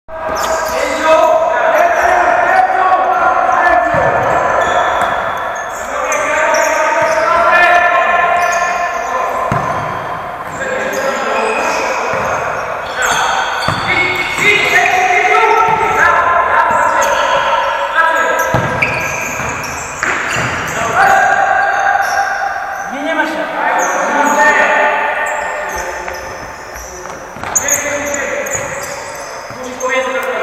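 Indoor futsal game in a large, echoing sports hall: players calling out to each other across the court, with the ball being kicked and hitting the floor a few times.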